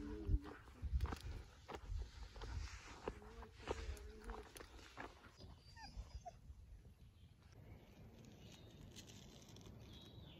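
A dog whining softly in short pitched bursts, at the start and again about three seconds in, over footsteps and handling noise on a dirt trail. After about five seconds it goes quiet apart from a few faint high chirps.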